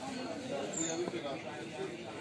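Indistinct voices of people talking in the background, with one light knock of the butcher's knife on the wooden chopping block about a second in and a brief high chirp just before it.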